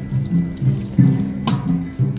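Bamboo chimes sounding low, hollow pitched notes one after another, two or three a second, with a sharp knock about one and a half seconds in.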